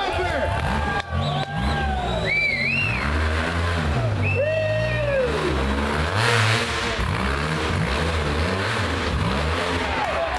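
Rock bouncer buggy's engine revving up and down in repeated bursts as it claws up a steep rock hill, with spectators shouting over it. A short rush of noise comes about six seconds in.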